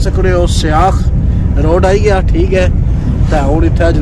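Steady low rumble of a car driving, heard inside the cabin, under a man talking in bursts.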